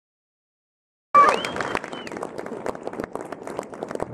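Silence for about the first second, then audience applause cuts in suddenly, loudest at its start and carrying on steadily.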